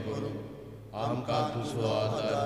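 A prayer recited aloud in Konkani in a steady, chant-like cadence, pausing briefly about half a second in before the voices resume, over a steady low hum.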